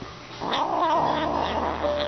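A kitten giving one long, wavering meow, starting about half a second in.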